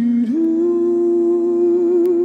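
A man's voice humming one long note into a microphone, sliding up in pitch just after the start and then held steady, over a sustained musical backing tone.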